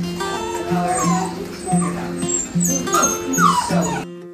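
Puppies whimpering and yipping in short, high whines that rise and fall, over steady background music.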